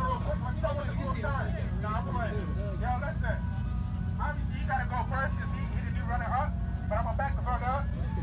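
A side-piped Subaru's engine idling with a steady low rumble under a loud crowd of shouting and talking voices; no bangs or pops.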